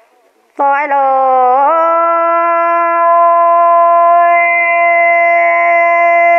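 A woman's voice singing a traditional Iu Mien song: after a brief hush, one long note that slides upward and is then held steady for about five seconds.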